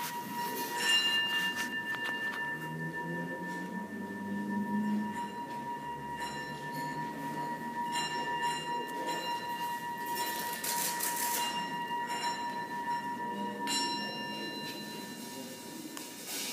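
Live experimental music: a steady high ringing tone held throughout, joined by higher bell-like tones and brief shimmering metallic washes that come and go. A low tone glides upward about three to five seconds in.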